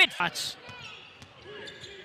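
Basketball game sound in a gymnasium: low crowd murmur with faint court noises such as ball bounces, after a clipped word of commentary at the start.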